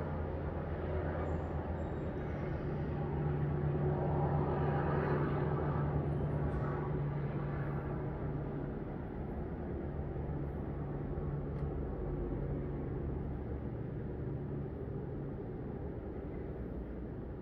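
Low engine rumble of road traffic, swelling about four to seven seconds in as a vehicle passes, then easing back to a steady drone.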